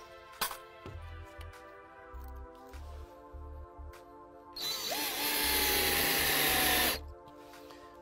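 Silverline cordless drill-driver running for about two seconds as it drives a stainless steel screw through a decking clip into a timber joist, its whine settling slightly lower in pitch as the screw goes in, then stopping abruptly. Background music plays before it.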